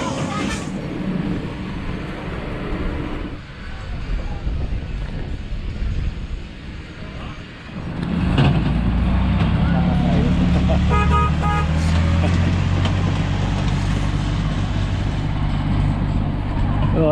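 About halfway through, mixed background noise gives way to the low, steady engine of a small tourist road train moving off. About three seconds later it sounds its horn in a quick run of short toots.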